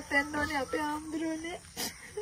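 A woman crying as she speaks, her voice wavering and breaking into sobs. There is a brief sharp noise near the end.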